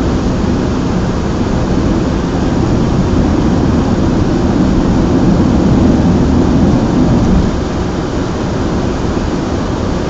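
Steady low rumble of road and engine noise inside a moving car's cabin, dropping a little about seven and a half seconds in.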